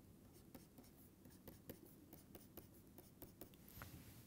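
Faint, irregular ticks and light scratches of a stylus on a tablet screen as short hatching strokes are drawn.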